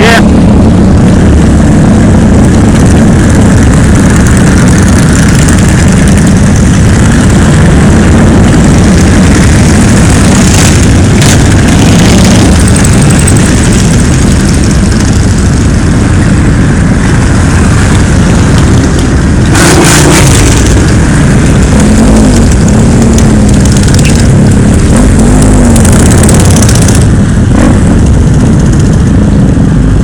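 Many motorcycle engines running together in a slow procession, a steady loud rumble, with engine pitch rising and falling as bikes rev between about 22 and 26 seconds in.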